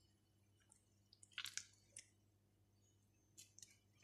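Near silence with a few faint, short wet squeezing sounds of grated cucumber being wrung out by hand to press out its water, about one and a half, two and three and a half seconds in.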